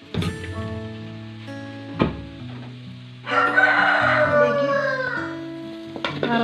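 A rooster crowing once, a loud call of nearly two seconds that falls away at the end, over steady background music. Before it come two sharp metallic clanks of aluminium cookware, one at the start and one about two seconds in.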